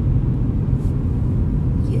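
Steady low rumble of a moving car's engine and tyres, heard from inside the cabin while driving.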